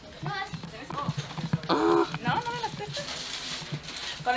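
Indistinct family voices in a room, with a loud, high-pitched exclamation about two seconds in. Near the end comes a rustle, like wrapping paper being handled, along with light knocks and bumps from the handheld camcorder.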